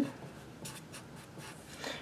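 Sharpie felt-tip marker writing on paper in a few short, faint strokes.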